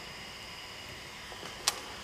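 Quiet room tone with a few faint steady high tones, and one sharp small click about 1.7 seconds in while the hot end's parts and cable are being handled.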